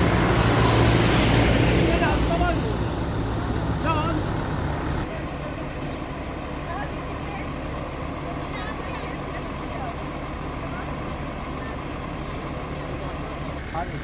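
A vehicle engine idling with steady outdoor background noise. It is louder over the first two seconds and quieter after about five seconds. Faint, indistinct voices come through in the background.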